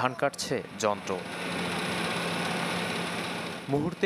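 Yanmar combine harvester running steadily: an even mechanical drone with a constant low hum, between short stretches of voice at the start and near the end.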